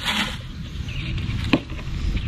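Dry insecticide granules poured from a cup into a plastic bucket, a brief soft hiss at the start, followed by a single sharp click about one and a half seconds in.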